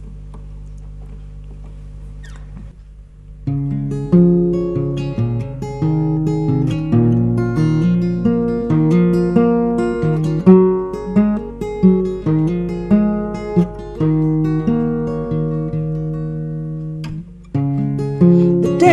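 Steel-string acoustic guitar played fingerstyle, single plucked notes and chords in a flowing pattern, starting about three and a half seconds in after a low, steady hum. It is a song's introduction, with a brief pause near the end.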